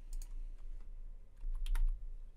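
Computer keyboard keys being typed: a couple of keystrokes just after the start, then a quick run of several keystrokes in the second half.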